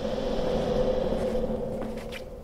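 A steady droning hum with a hiss over it, one held low tone throughout, easing off near the end: an ambient drone from the audio drama's sound design.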